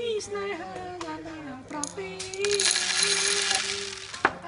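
Small hard objects jingling and clinking together in a dense rattle for about a second and a half, starting a little past the middle.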